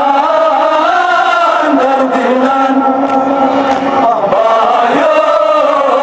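Men's voices chanting a Kashmiri noha, a Muharram mourning lament, together in a group, holding long notes that slowly rise and fall.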